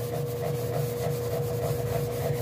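A sponge scrubbing the inside of an aluminium pan with cleaning paste in circular strokes, making a continuous rubbing sound. A thin steady hum runs behind it.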